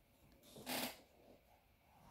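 Near silence, broken once a little under a second in by a short, soft intake of breath from a man pausing between sung lines.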